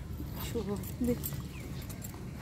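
Two short snatches of a woman's voice over a steady low rumble, with a few light clicks from a handbag being opened and rummaged through.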